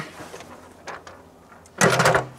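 A travel trailer's molded propane-tank cover being lifted off and handled: faint rustling with a small click about a second in, then a loud scrape and knock near the end as the cover is set down.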